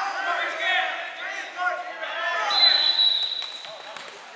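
Shouting voices over a wrestling pin, then a thump on the mat and a referee's whistle blown in one long, steady high blast of about a second and a half, signalling the fall.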